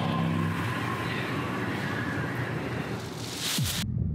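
A music cue fades under a noisy sound-design bed, then a rising whoosh that cuts off suddenly near the end.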